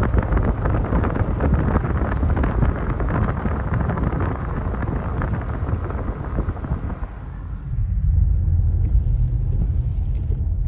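A car driving, heard from inside the cabin: a steady low rumble with rushing road and tyre noise. About seven seconds in the rushing noise fades as the car slows for a stop, leaving mostly the low rumble.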